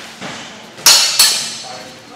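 Two clashes of metal training blades in sword sparring, about a third of a second apart, each ringing briefly.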